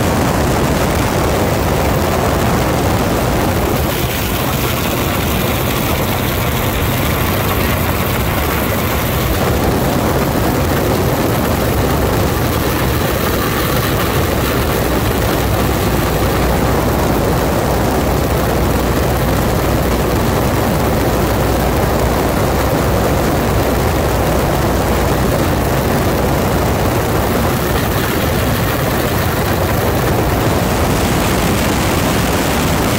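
A 1940 Waco UPF-7 biplane's Continental W-670 seven-cylinder radial engine and propeller run steadily in flight, heard from the open cockpit with loud rushing wind.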